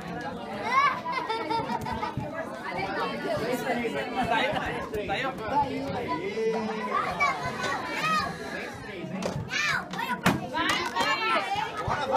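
A group of children shouting and calling out excitedly in play, with adults chattering around them. There are a few sharp knocks near the end.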